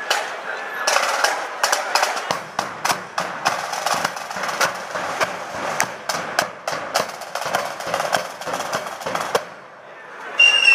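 The drums and cymbals of a marching flute band playing a fast, rattling street beat on their own, with the flutes silent. The beat stops just before the end, and the flutes come in right after it.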